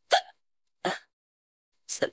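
A woman hiccuping: three short, sharp hiccups about a second apart, the first the loudest.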